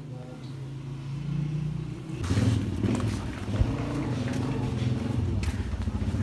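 A motor vehicle engine running close by, starting suddenly about two seconds in and continuing steadily, with voices mixed in. A quieter low hum comes before it.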